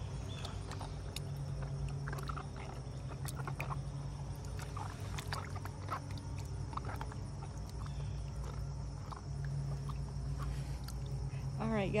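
A steady low mechanical hum, with faint scattered clicks and short sounds over it.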